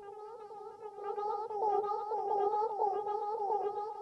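Hologram Microcosm pedal in Mosaic C mode, layering micro-loops of a voice played back at double speed: a dense, chirping, octave-up cloud of short repeating vocal fragments that grows louder over the first second or two.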